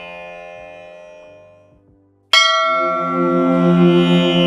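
Devotional music dies away almost to silence, then a single bright bell strike sounds a little over two seconds in and rings on as steady music with a held drone comes back in.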